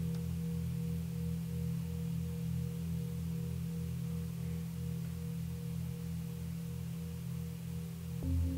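Soft ambient background music: a low sustained drone with a slow, even pulsing waver and a fainter higher tone above it, with a ring like a singing bowl.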